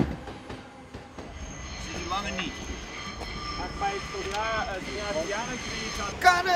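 A train running past on the track, with a steady high-pitched wheel squeal setting in about a second in and holding. Voices talk in the background.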